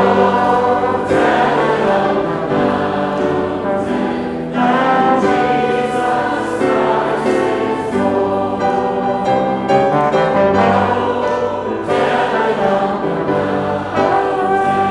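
Voices singing a Christmas hymn together, accompanied by a trombone and a grand piano.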